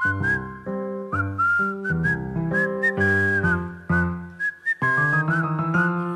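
Upbeat backing music: a whistled tune over bass, chords and a drum beat.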